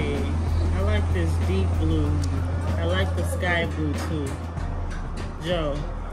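Voices talking quietly with music in the background, over a steady low hum.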